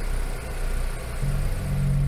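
Van engine and road noise heard from inside the cabin while driving. Low steady music tones fade in about halfway through.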